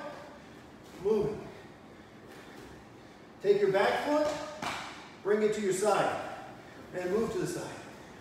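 A man's voice giving four short calls, with quiet stretches between them.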